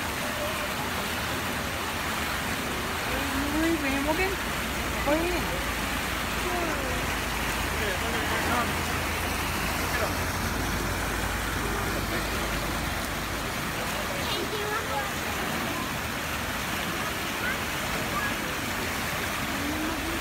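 Steady rush of water from a fountain jet splashing onto rock and into a pool, with scattered voices of people around.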